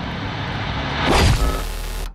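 Trailer sound design: a steady low drone laced with noise, swelling to its loudest a little past a second in, then cutting off abruptly at the end.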